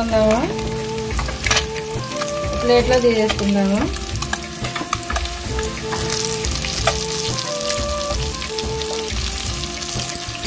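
Whole boiled eggs frying in hot oil in a pot, sizzling steadily, while a metal spoon stirs and turns them.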